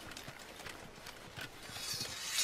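Hooves clopping on the ground: a few scattered, unhurried hoofbeats from horses or centaurs moving about.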